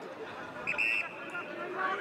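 A short, high blast on an umpire's whistle about a second in, over faint voices around the ground.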